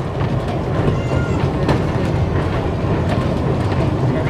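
Heritage electric tram running along its track, a steady low rumble of wheels and running gear heard from on board.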